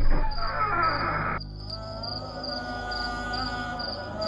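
Cricket chirping, a high chirp about twice a second, over sustained background music with a low drone. A rushing noise in the first second and a half cuts off suddenly.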